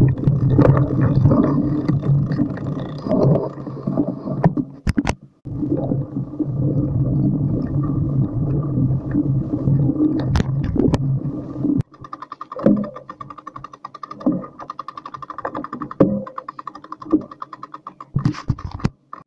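Bicycle riding over a rough dirt trail, picked up on a handlebar-mounted camera: a continuous rumble of the tyres and frame with knocks from bumps, turning into a choppier, faster rattle in the last few seconds.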